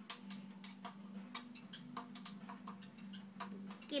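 A scattering of faint, irregular small clicks and ticks over a steady low hum.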